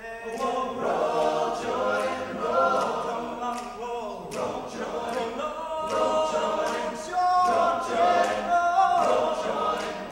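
All-male a cappella group singing a traditional spiritual in several-part harmony, voices only with no instruments.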